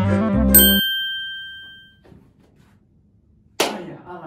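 Organ-like keyboard music stops under a bright chime ding that rings out for about a second. After a quiet stretch, a sudden sharp burst comes near the end: a sound effect for a person teleporting in.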